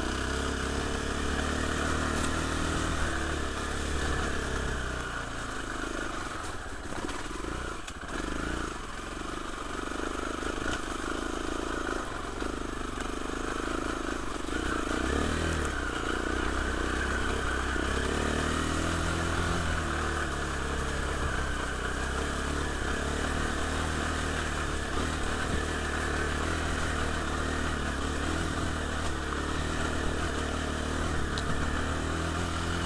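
KTM Freeride 350's single-cylinder four-stroke engine running under a constantly changing throttle, the revs dropping and picking up again several times, with a few knocks from the bike over rough ground around seven to eight seconds in.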